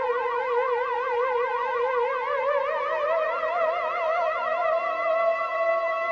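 Electronic music: held, theremin-like synthesizer tones with a fast, wide vibrato, wobbling about six times a second, while a lower held note slowly rises in pitch.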